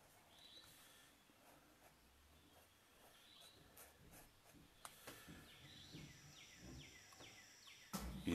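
Near silence with faint room tone; in the second half a distant bird sings a quick run of short falling notes, about three a second. A couple of soft clicks come shortly before.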